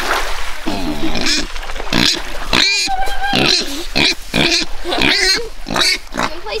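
A piglet squealing in a series of short, high-pitched calls, some rising and falling in pitch.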